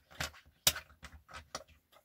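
Small hard clicks and taps of fingers adjusting the saw-blade attachment on a handheld rotary tool, with the tool's motor switched off. About eight irregular clicks, the loudest a little under a second in.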